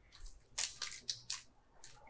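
Foil booster-pack wrappers crinkling in a series of short, crisp crackles as a hand picks through the box of packs.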